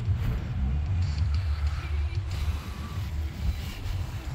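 Wind buffeting the microphone of a handheld phone: an uneven low rumble that rises and falls.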